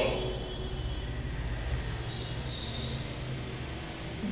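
A steady low rumble, easing toward the end, with a faint thin high tone about two seconds in.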